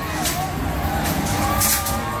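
John Deere farm tractor's diesel engine running close by with a steady low rumble as it tows a parade float. Two short hissy bursts stand out over it, one just after the start and a louder one near the end.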